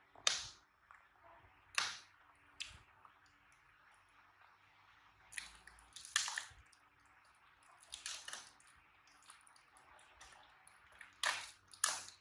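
Plastic wrapping on a pack of boxed milk crinkling and crackling in short, sharp bursts, about eight in all, as hands pull it open and work a carton free.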